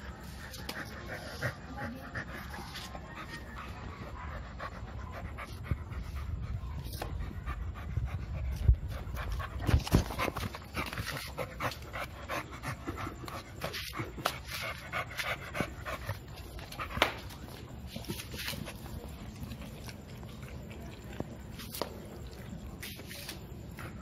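American Bully dog panting close to the microphone while playing, open-mouthed, with bumps and rubbing as the phone is jostled against it; the loudest knocks come about nine to ten seconds in and again near seventeen seconds.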